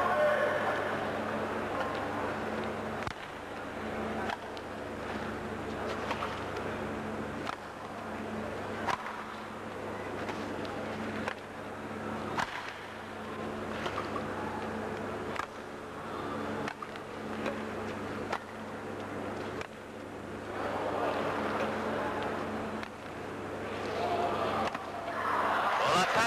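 Badminton rackets striking a feather shuttlecock in a long rally, sharp hits roughly every second or so, over the murmur of a crowd and a steady low electrical hum. The crowd noise swells near the end.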